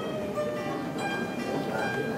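Đàn tranh, the Vietnamese plucked zither, playing a slow melody: single notes plucked one after another, each left to ring on under the next.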